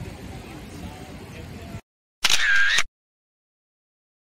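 A single camera-shutter sound, loud and a little over half a second long, about two seconds in. Before it, outdoor background noise cuts off abruptly into silence.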